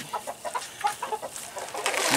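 Chickens clucking softly in short, scattered notes, with a few faint clicks and rustles.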